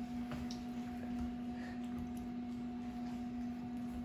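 Faint, wet clicks of someone chewing a large mouthful of food, over a steady low hum.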